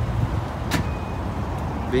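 Steady low rumble of an outdoor car-show parking lot, with one sharp click about three-quarters of a second in.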